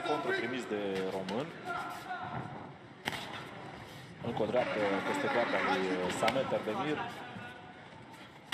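Men's voices shouting during a kickboxing exchange, with one sharp smack of a strike landing about three seconds in.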